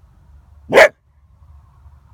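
A coyote held in a foothold trap gives one short, loud bark about three-quarters of a second in.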